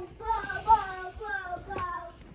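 A young boy singing a short tune to himself, his voice gliding up and down in pitch.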